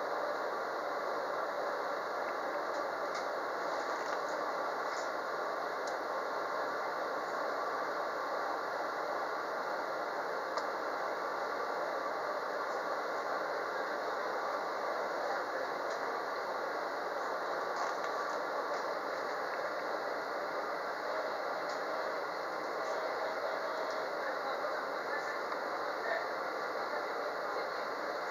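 Steady hum of a stationary JR West 213-series electric train's onboard equipment heard inside the car, with a few faint ticks now and then.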